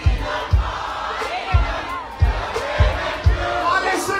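Live go-go music: a steady drum beat, a low hit roughly every two-thirds of a second, under a crowd of voices shouting and chanting along.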